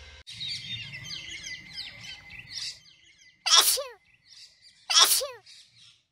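Birds chirping for the first few seconds, then two sneezes about a second and a half apart, each falling in pitch.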